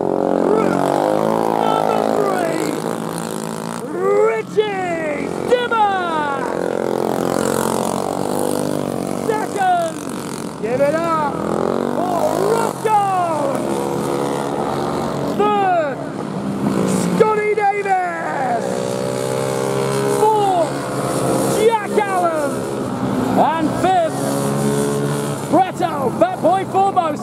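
Small racing engines revving up and easing off again and again as the racers pass and slow after the finish, over a steady engine drone.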